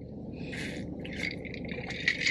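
Sipping a drink through a straw from a tumbler: a short slurp about half a second in, then a few faint liquid gurgles, over a steady low rumble inside a car.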